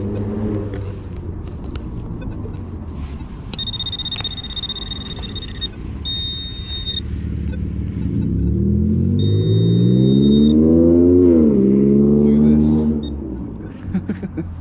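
A car engine on the street accelerating, its pitch rising and then dropping sharply before levelling off, loudest from about nine to thirteen seconds in, over a steady low traffic rumble. Earlier, a metal detector's steady high-pitched tone sounds three times, first for about two seconds and then twice for about a second, as a target is dug out of the grass.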